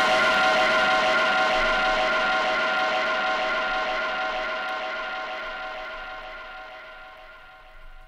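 A jazz-rock ensemble's final chord, held as a sustained cluster of steady notes over a dying cymbal wash and slowly fading away to near silence at the end of a track.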